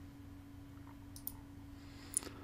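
Two quick computer mouse clicks a little past a second in, faint, over a steady low electrical hum.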